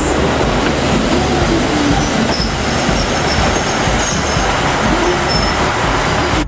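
KiHa 85 series diesel railcars rolling slowly past on the station track, with a steady running rumble and a faint high wheel squeal from about two seconds in until near the end.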